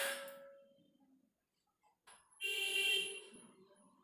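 A bar of milk chocolate with Oreo filling is snapped apart by hand, giving a sudden crack at the start that fades over about a second. A second, longer sound with a ringing tone follows about two and a half seconds in.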